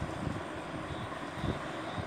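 Steady low background rumble and hiss, with a brief low swell about one and a half seconds in.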